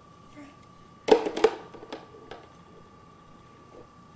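Hard plastic toy pieces clattering, the lid and bucket of a child's shape-sorter: a quick run of sharp clacks about a second in, then a couple of lighter clicks. A faint steady high tone runs underneath.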